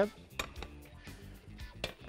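A few light clinks and knocks of kitchen pans and utensils on the counter, with sharp clicks about half a second in and near the end, over faint background music.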